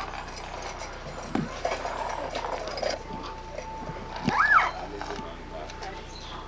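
Background voices of people at a zoo exhibit, with a short high call that rises and falls about four and a half seconds in, a few faint knocks and a faint steady tone in the second half.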